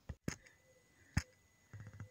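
Mostly quiet, with a few short sharp clicks near the start and a louder one a little over a second in.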